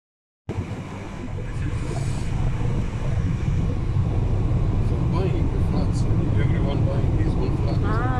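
Steady low road and engine rumble inside a car cabin at highway speed. It starts abruptly about half a second in and grows slightly louder over the next couple of seconds.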